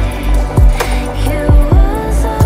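Chillstep electronic music: deep kick drums, four in this stretch in an uneven pattern, over sustained bass and synth chords.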